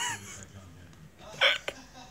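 A person laughing in short bursts: a high, fading laugh at the start, then one loud, abrupt burst about halfway through.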